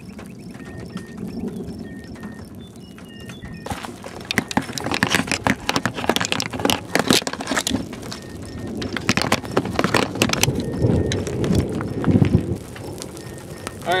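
Camcorder handling noise as the camera is fumbled onto a tripod: a dense run of irregular clicks, knocks and rubbing that starts a few seconds in, over a steady haze of rain.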